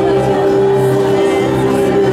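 Live worship music: acoustic guitars and a keyboard holding a steady chord, with singers on microphones.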